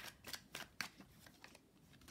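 Faint handling of oracle cards: a few short flicks and rustles as a card is drawn from the deck, thinning out after the first second and a half.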